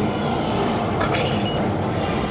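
Steady low rumble and hum of a railway station's background noise, with a faint short beep about one and a half seconds in.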